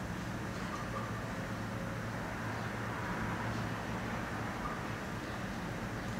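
Steady room tone: a low hum with a faint hiss and no distinct events.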